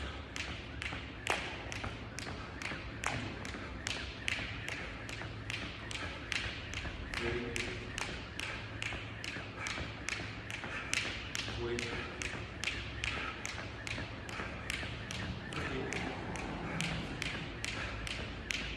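Skipping rope slapping a rubber gym floor in a steady rhythm, about two strikes a second, with the soft thud of feet landing.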